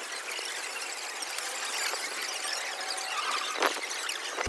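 Background hubbub of a crowded pedestrian shopping street, an even hiss-like wash with no single sound standing out, and a sharp click a little before the end.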